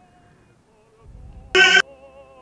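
An opera tenor's recorded voice: faint held tones, then, about one and a half seconds in, a short loud burst of a sustained sung note that starts and cuts off abruptly.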